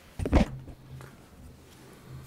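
A brief, loud thump in two quick parts, about a quarter second in, picked up close to a microphone, followed by faint low hum.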